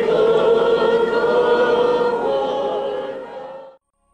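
Orthodox church choir singing the liturgical response to the hierarch's blessing in long, held chords of several voices. It cuts off abruptly near the end.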